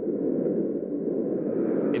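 Wind blowing through trees: a steady low rushing noise.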